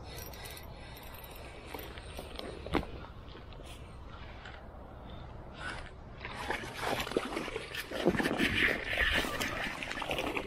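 Dry grass and clothing rustling and crunching as someone moves through the bank vegetation. The rustling grows louder and busier in the last few seconds, with a single sharp click a few seconds in.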